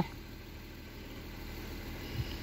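Audi A8's 3.0 V6 TDI diesel engine idling steadily, heard from inside the cabin as a low, even hum.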